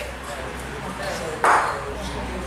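Spectators talking in the background, with one sudden, loud ringing knock about one and a half seconds in, the kind of hard knock a bocce ball makes when it strikes.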